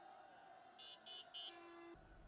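Three short, faint toots in quick succession, about a third of a second apart, from a horn.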